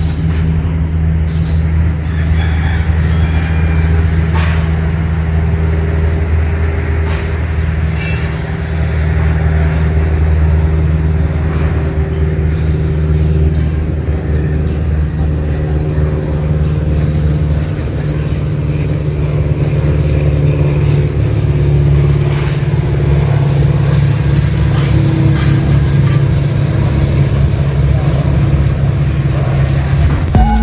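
A steady low engine drone, with a few faint clicks over it.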